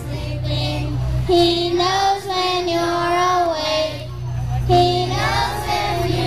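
A young child singing into a handheld microphone in two phrases of long held notes, with a short break in between near the four-second mark. A steady low hum runs underneath.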